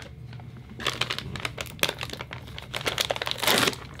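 Crinkling of a small paper-and-plastic sample packet being handled and opened in the hands, with irregular crackles that grow louder near the end.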